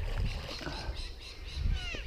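Splash of a released Australian bass dropping back into the water, fading away over low wind rumble on the microphone. Near the end a bird gives a short falling call.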